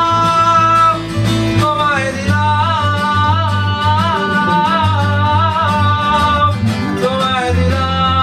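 Live acoustic band: a man singing with two acoustic guitars and an electric bass guitar. His voice holds one note for about a second, then moves on in a wavering melodic line over the strummed chords and bass notes.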